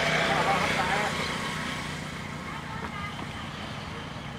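A ploughman's voiced calls to his bulls for about the first second, over a steady low rumble of outdoor noise that carries on after the calls stop.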